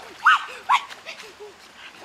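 A rapid series of short animal calls, each rising and falling in pitch, with two louder, higher calls in the first second, then fainter ones.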